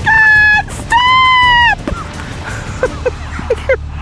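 A woman screaming "stop" twice in long, high-pitched cries at a horse galloping toward slippery, flooded ground, the second cry a little higher and longer. A few short, much quieter sounds follow.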